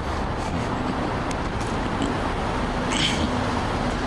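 Steady street traffic noise with a vehicle engine running as a low hum, and a short hiss about three seconds in.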